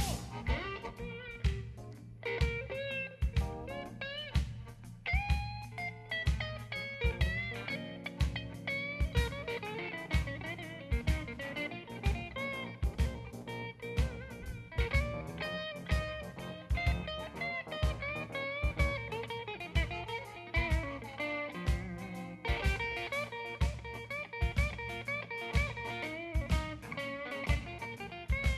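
Live electric blues band playing an instrumental passage. A lead line of bent notes, with electric guitar prominent, plays over bass and drums keeping a steady beat.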